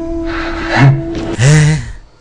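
Background music with held tones, under a man's two loud wordless vocal exclamations. The first is breathy; the second is longer and louder, and comes as the music stops about a second and a half in.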